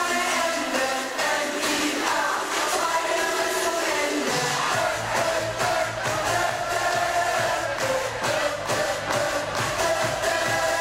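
Recorded up-tempo pop song with singing and a steady beat; a deep bass line comes in about halfway through.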